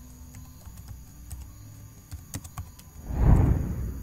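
Computer keyboard keys clicking as a username is typed, in scattered keystrokes over a faint low hum. About three seconds in comes a louder, short rush of low noise.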